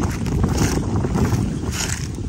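Wind buffeting the microphone with an irregular low rumble. Two brief high rustles come through, about half a second in and near the end.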